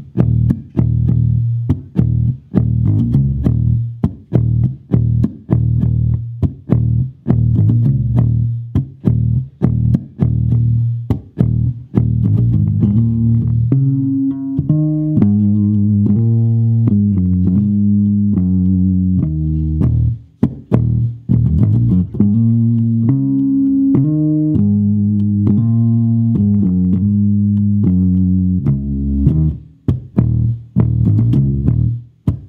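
Mid-1960s Höfner 500/6 semi-hollow electric bass played fingerstyle on its neck pickup, through a Fender Rumble 200 bass amp with the EQ flat and no reverb. The first half is a fast run of short, clipped notes; about halfway through it changes to a melodic line of longer, ringing notes.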